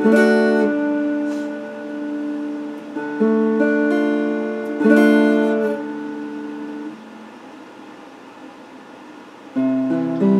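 Electric guitar playing chords, each struck and left to ring: one at the start, another about three seconds in and another about five seconds in. The playing drops quieter for a couple of seconds before a new, louder chord comes in near the end.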